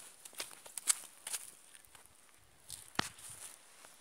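Footsteps on bare dirt ground: a few separate soft scuffs and knocks, the sharpest about three seconds in.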